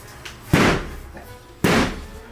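An axe striking a wall panel twice: two heavy blows about a second apart, each with a short ring-out.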